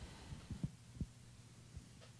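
Quiet room tone with a steady low hum, broken by a few soft, low thumps around half a second and one second in, and a fainter one near the end.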